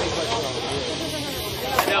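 Several people talking in the background, their voices indistinct, over a steady hiss.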